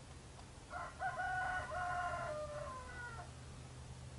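A bird giving one long crowing call, several linked notes that end in a drawn-out, falling last note.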